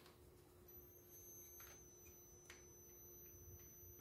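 Near silence: faint room tone with a steady low hum and a few faint small clicks of hands working thin wire on a cordless drill clamped to a bicycle.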